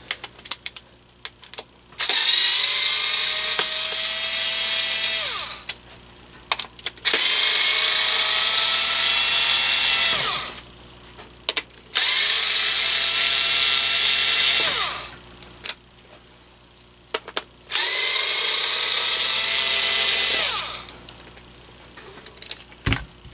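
Handheld electric screwdriver backing screws out of a stand fan's housing in four runs of about three seconds each. Its motor whine climbs as it spins up and drops away as it stops, with small handling clicks in between.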